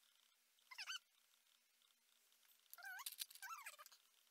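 Faint, high-pitched calls from an animal, three in all: one short call about three-quarters of a second in, then two more close together near the end, each wavering up and down in pitch.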